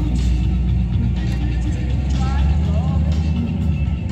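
A car engine running nearby with a steady low rumble, under background music and the chatter of people.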